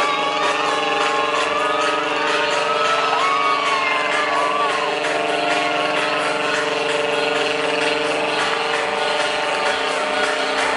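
Electronic dance music from a DJ set, played loud over a festival sound system and heard from within the crowd: a held synth chord with a faint fast ticking beat, and voices in the crowd wavering over it in the first half.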